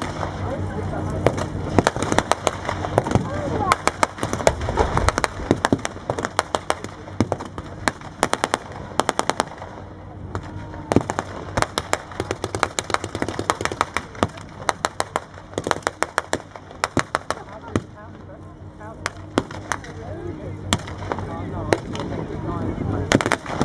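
Blank gunfire from rifles and machine guns in a Second World War battle re-enactment: scattered single shots and rapid bursts throughout, with a tank engine running low underneath at the start and near the end.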